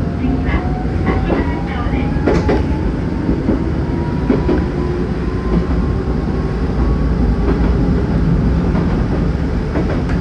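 Nankai Shiomibashi Line electric train running on the rails, a steady heavy rumble with a motor whine that slowly rises in pitch as the train gathers speed. A handful of sharp clacks from the wheels crossing rail joints come in the first few seconds.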